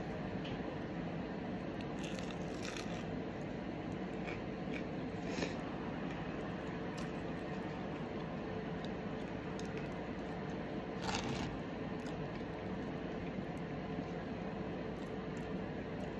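Close-up chewing of a crisp, air-fried plant-based cheeseburger pocket, with a few faint crunches over a steady background hiss.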